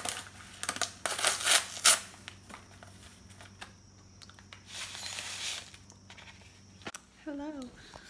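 Paper instant-oatmeal packet crinkling and being torn open: a few loud rustling bursts in the first two seconds and a softer spell of rustling later. A steady low hum sits underneath and cuts off suddenly shortly before the end.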